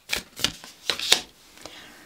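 Tarot cards being shuffled by hand, with several quick snaps of card on card in the first second and a half, then quieter handling.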